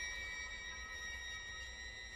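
Bowed strings of a string trio holding one quiet, high, thin note steady, with faint overtones above it.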